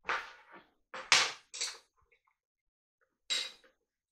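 A kitchen knife cutting a lemon on a cutting board and utensils being handled: about five short knocks and clatters, the loudest about a second in, then a last one near the end.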